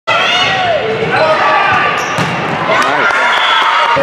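Volleyball rally on a gym court: a few sharp hits of the ball around two and three seconds in, over players and spectators calling out.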